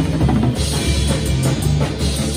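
Rock drum kit played hard with sticks, cymbals and drums struck in a dense pattern, over music that includes a guitar and sustained bass notes.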